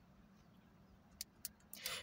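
A near-quiet pause inside a car: a faint steady low hum, two small clicks about a second and a half in, and an in-breath just before speech resumes.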